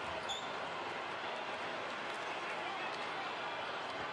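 Steady background noise of a basketball arena on a TV broadcast, with one brief high chirp shortly after the start.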